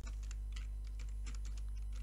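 Computer keyboard being typed on: a quick run of key clicks as a word is typed, over a steady low electrical hum.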